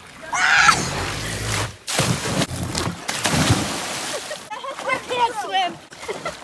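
A child sliding down a corrugated half-pipe slide, a rumble with an excited shout, then hitting the pond water with a splash about two seconds in and the water churning for a couple of seconds. Voices come in near the end.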